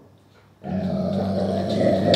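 A dog giving one long, low, drawn-out vocal sound that starts about a third of the way in and lasts over a second.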